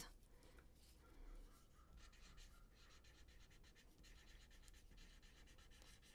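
Faint scratching of a rehydrated Crayola felt-tip marker writing on paper, the tip rubbing across the sheet in short strokes.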